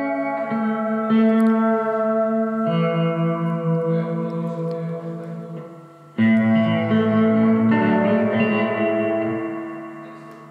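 Music: reverberant guitar chords, one struck as the sound begins and another about six seconds in, each left to ring out with echo and slowly fade.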